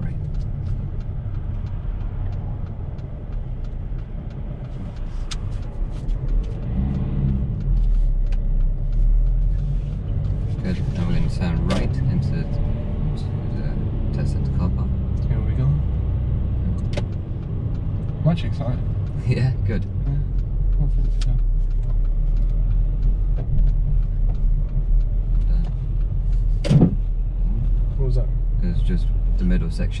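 Steady low rumble of a car's engine and tyres heard from inside the cabin while driving slowly, with a few scattered clicks and knocks, the strongest near the end.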